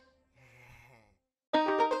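A faint, short breathy sigh about half a second in, then a brief silence. Children's music starts abruptly near the end, with quick evenly spaced notes.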